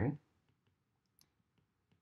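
Near silence with a few faint clicks of a stylus tapping and writing on a tablet's glass screen.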